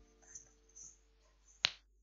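Mostly quiet, with a single sharp click or snap about one and a half seconds in.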